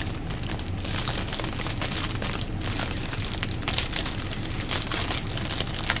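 Plastic packaging crinkling and crackling as it is handled, a steady run of small clicks.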